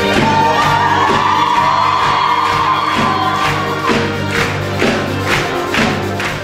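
Live concert music with a large group of voices singing together. A long high note is held from just after the start until about four seconds in, over a steady beat of about two hits a second.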